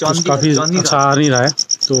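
A cricket chirping steadily, a high-pitched even run of short pulses several times a second, with people's voices talking loudly over it for most of the first second and a half.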